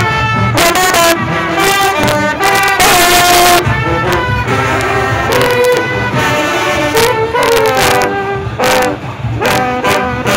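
Junkanoo brass section of trumpets, trombones and a sousaphone playing a loud, held-note melody, with frequent sharp percussion hits through it.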